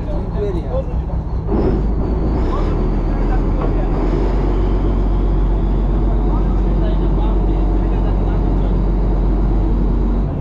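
Fishing boat's engine running steadily with a low hum, getting louder about a second and a half in, while men's voices talk over it.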